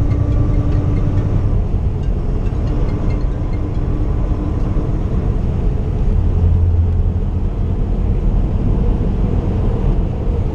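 Steady in-cab drone of a 2015 Kenworth T680 semi truck's diesel engine and tyre noise at highway speed. A deeper hum swells briefly a little past the middle.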